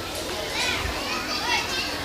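A crowd of children's voices chattering and calling out at once, with a few high voices rising above the rest.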